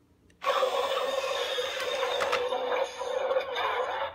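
The motorised transforming mechanism of a toy R/C Batmobile running as the vehicle lowers from its raised battle mode back to car form. It starts about half a second in, runs steadily with a few clicks midway, and stops as the body settles.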